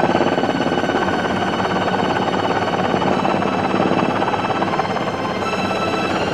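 Military helicopter in flight: steady rapid rotor pulsing with a constant turbine whine.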